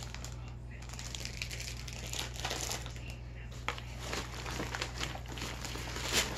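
Cellophane and plastic wrapping crinkling and rustling as a wrapped lollipop and the bag's contents are handled, with scattered light clicks and one sharper click about two thirds of the way through.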